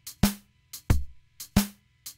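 Programmed drum-machine beat playing a heavily swung shuffle, with the swing amount turned up to an extreme setting: a loud drum hit about every two-thirds of a second, each with a softer hit falling late, just before it.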